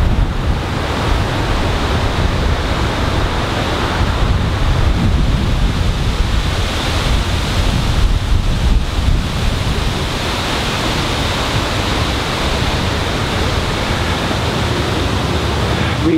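Wind blowing over an outdoor microphone: a steady, deep rush of noise with no break.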